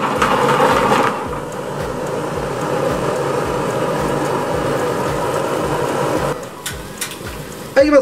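Gas range burner on a high flame, with cream sauce and pasta cooking hard in an aluminium frying pan: a steady rushing sound that drops to a quieter level about six seconds in as the flame is turned down, followed by a few light clicks.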